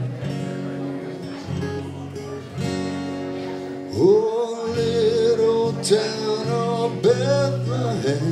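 Acoustic guitar played alone with a couple of chord changes, then about halfway through a man starts singing along, his voice sliding up into a long held note.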